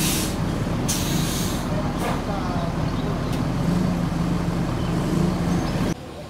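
Intercity coach's diesel engine idling steadily, with two short hisses of compressed air from its air system, one right at the start and a longer one about a second in.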